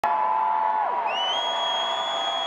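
Arena concert crowd cheering and whooping between songs, with a long, high, shrill whistle from someone in the audience starting about halfway through.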